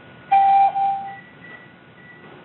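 A single electronic beep on a telephone conference line: one steady mid-pitched tone about a second long, loud for its first half and softer after.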